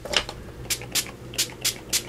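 Small Lindy's shimmer-spray bottle spritzing gold mist onto paper in about six short, separate hisses.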